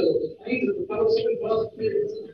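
A person talking indistinctly, the words too muffled to make out.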